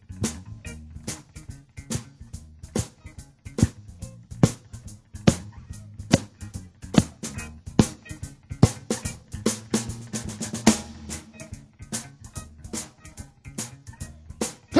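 Live blues band vamping an instrumental groove: a drum kit keeps a steady backbeat, the strongest snare or rimshot strokes falling about every 0.8 s, over a continuous bass line with some guitar.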